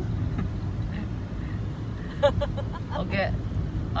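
Steady low rumble of a car's engine and tyres heard from inside the cabin while driving, with a few short words spoken about two to three seconds in.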